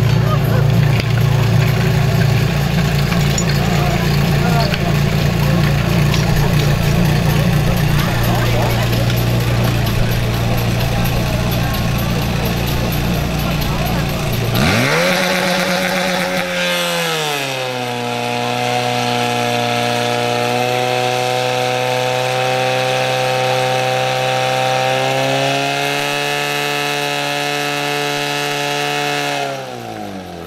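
Portable fire pump engine running hard, driving water through the hoses for a fire attack: a loud low rumble at first, then a steady high-revving engine note whose pitch drops a little past the middle, climbs again later and falls away near the end as the throttle changes.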